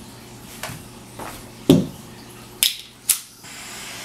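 Handheld butane torch lighter being fired: a knock, then two sharp clicks of its igniter, after which the flame catches with a faint steady hiss.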